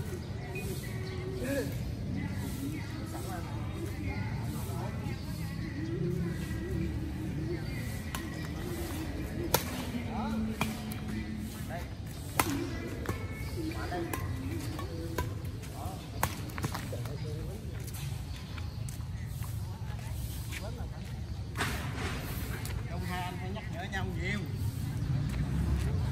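Badminton rackets striking a shuttlecock during a rally: a few sharp cracks several seconds apart. Players' voices and a steady low rumble of street traffic run underneath.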